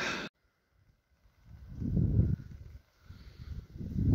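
Gusts of wind buffeting a phone's microphone: two low, rumbling swells in the second half, after about a second of dead silence near the start.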